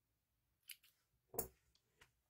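Small spring-action thread snips cutting a strand of yarn: two short, crisp clicks, the second one louder.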